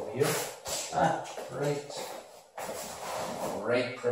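A man's voice making wordless sounds in several short phrases.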